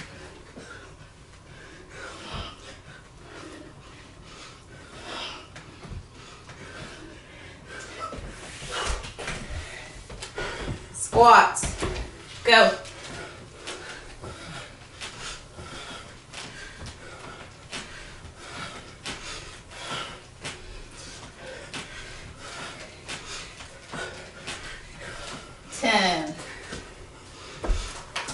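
Two people exercising through push-ups and squats on a wooden floor: hard breathing with soft knocks and shuffles of movement. About eleven seconds in come two loud vocal sounds, each falling in pitch, a second or so apart.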